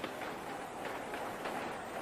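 Steady, even background noise of a large stadium crowd, picked up by a TV cricket broadcast's ambient microphones.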